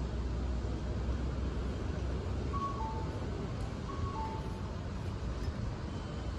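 Low, steady rumble of street traffic, with a city bus pulling in. A short two-note electronic chime, the second note lower, sounds twice, about a second and a half apart.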